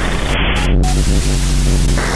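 Noise music: dense static and white noise over a heavy, steady low hum, with the upper hiss cutting out abruptly twice in the first second.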